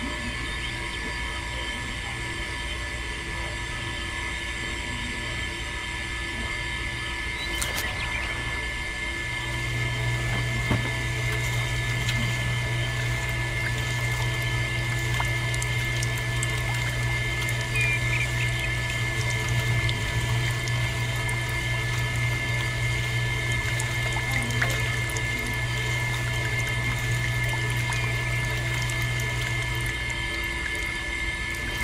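Small electric motor driving the rollers of a miniature sugarcane juicer, a steady whine. A deeper hum joins about nine seconds in, as the rollers crush a cane stalk.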